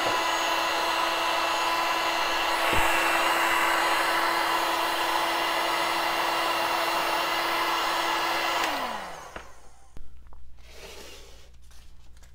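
Electric heat gun blowing hot air onto the top of a soy wax candle to melt its surface: a steady rush of air with a steady fan hum, and a brief click about three seconds in. About nine seconds in it is switched off and its fan winds down, falling in pitch, leaving only faint handling sounds.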